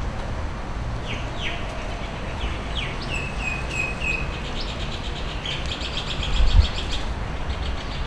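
Small birds chirping in the trees: a few quick downward-sliding notes, then a run of four short even notes, then a fast chattering trill, over a steady low rumble of outdoor background noise. A brief low thump comes about six and a half seconds in.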